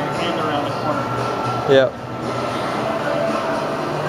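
Steady background noise of an indoor shopping mall: a ventilation hum with faint distant voices and a faint steady high tone.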